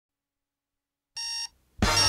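Cartoon digital alarm clock beeping: silence, then one short electronic beep about a second in, and a second, louder beep starting just before the end with fuller sound coming in beneath it.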